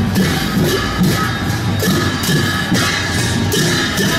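Large hand cymbals clashed in a slow, steady beat over the ongoing music of a street procession, each clash a bright metallic crash.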